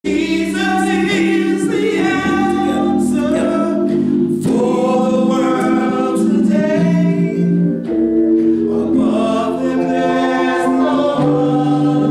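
Gospel song sung by women's voices over held keyboard chords that change in steps, steady and loud.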